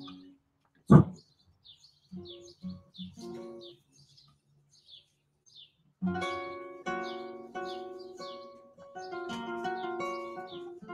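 Classical guitar improvising in flamenco style. One sharp strummed chord comes about a second in, followed by a few sparse plucked notes, then a steady run of ringing chords from about six seconds in.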